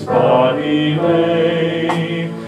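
A hymn sung to instrumental accompaniment, a voice holding long wavering notes.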